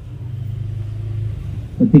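A low, steady engine-like hum that grows slightly louder and then eases off near the end.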